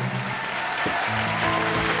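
Audience applause over music from the show, as a performer is welcomed on stage.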